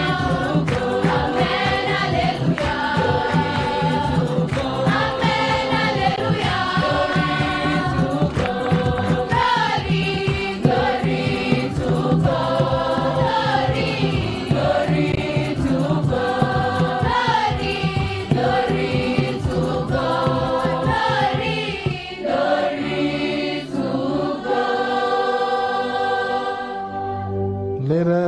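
A large choir of schoolgirls singing a religious song together in held notes, over a steady beat.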